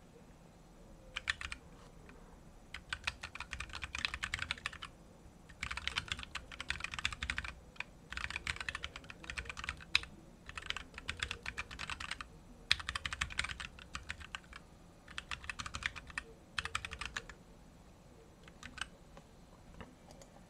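Typing on a computer keyboard in quick runs of keystrokes broken by short pauses. The typing stops a few seconds before the end, followed by a couple of lone key clicks.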